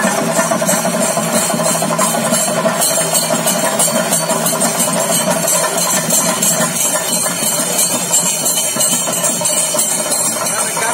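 Loud, unbroken Theyyam percussion: chenda drums with rapid clashing of small hand cymbals (elathalam), played fast and dense.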